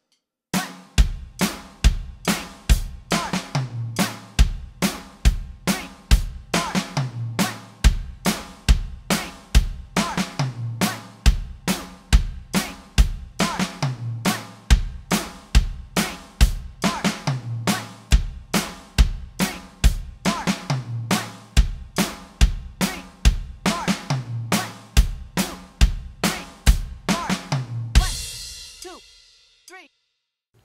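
Roland electronic drum kit playing a slow, steady drum fill at 70 beats per minute, over and over: eighth notes traded between snare and kick drum, closing on snare, snare, rack tom. A cymbal crash near the end rings out and fades.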